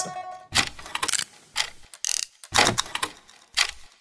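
Sharp mechanical clicks and clacks, roughly one a second and some in quick pairs, with a brief hiss about two seconds in: sound effects of a title sequence.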